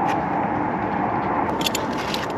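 Plastic food pouch rustling and crinkling as it is squeezed empty into a metal tray, with a few sharp crinkles about one and a half seconds in, over a steady background hiss.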